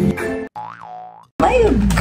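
Upbeat background music with drums cuts off about half a second in. A short cartoon 'boing' sound effect follows, its pitch rising and then falling.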